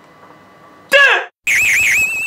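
Electronic sound-logo jingle for the Kyoraku brand: about a second in, a short high tone sliding down in pitch, then after a brief gap a loud high electronic tone with a fast warble.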